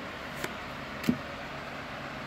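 Two short, soft clicks, about half a second and a second in, from trading cards being handled and swapped by hand, over a steady background hiss.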